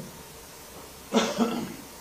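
A man coughs once, briefly, about a second in, during a pause in his speech.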